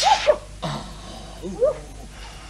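A woman stifling sneezes into a handkerchief held over her nose and mouth: a sudden muffled hissing burst at the very start and another about half a second later, each with short squeaky catches of the voice, and one more squeak after a second and a half.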